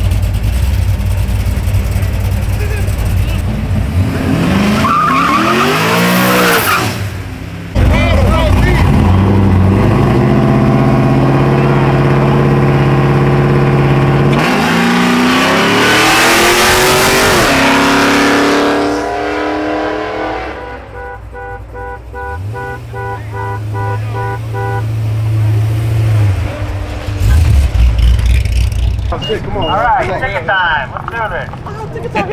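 Loud car engines revving and accelerating hard, pitch rising as they pull, with an abrupt jump in level about eight seconds in. From about two-thirds of the way through it turns quieter, with a short tone repeating evenly over a steady low engine drone, then loud engine noise again near the end.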